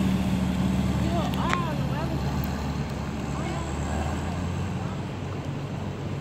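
Ferrari convertible's engine running at low revs as the car pulls slowly away, a steady low drone that gradually fades.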